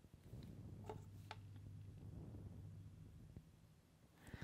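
Near silence: room tone with a faint steady low hum and two faint small clicks about a second in.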